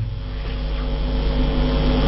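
A steady low hum with several held tones, unchanging through the pause in speech.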